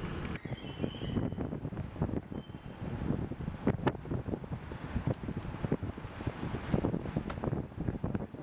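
Outdoor street ambience with two short high-pitched squeals in the first three seconds, then scattered knocks and steps around a parked car as its door is opened and a man walks away.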